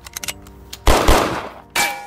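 Loud gunshot sound effects for a toy blaster being fired: a few light clicks, then two heavy shots about a fifth of a second apart, followed near the end by a sharp metallic clang with a short ring, as of a shot striking a round shield.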